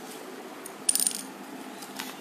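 A brief light clink of small hard objects, a short ringing jingle lasting about a quarter of a second, about a second in, over faint room hiss.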